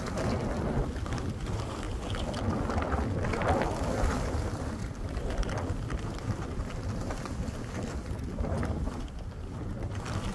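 Wind buffeting the microphone of a camera carried while skiing, over the hiss of skis sliding through fresh powder, which swells about three to four seconds in.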